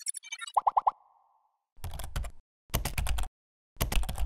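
Logo-animation sound effects: four quick pitched pops in a row about half a second in, then three short noisy whooshing hits with a low thump, about a second apart.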